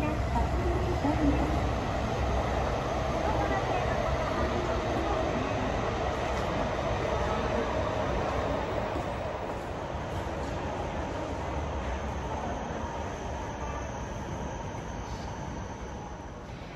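A train running through the station, its low rumble gradually fading away, with a wavering whine in the first half.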